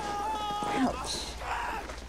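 A drawn-out, pitched cry from the film's soundtrack, held on one note and dropping off just under a second in, followed by a shorter, higher cry. It comes as the skydivers hit the ground after a hard, dusty crash landing.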